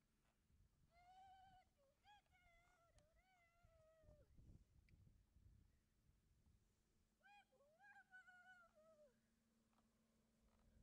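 A young puppy whining in two bouts of drawn-out, faint, high calls. The first comes about a second in and lasts about three seconds; the second comes near the end. Each call slides down in pitch as it ends.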